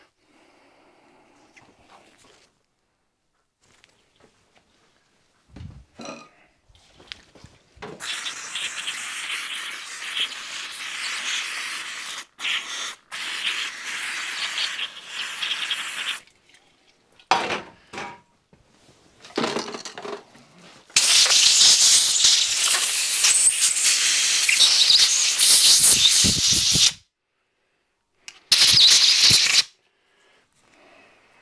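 Compressed air blown through the ports of a small brass oil pump block, in two long hissing blasts of about six to eight seconds each and a short one near the end. Light knocks from handling the part come in between.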